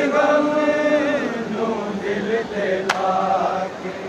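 Men's voices chanting a Shia noha (Urdu lament) in a slow, drawn-out melody, with one sharp chest-beating slap of matam about three seconds in.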